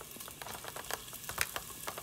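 Hot ghee softly sizzling and crackling in an Instant Pot's stainless steel inner pot on the sauté setting, with diced fresh ginger frying in it: many small irregular pops over a steady hiss.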